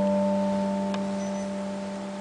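A chord on an electronic stage piano, held with the sustain, slowly dying away. A faint click comes about a second in.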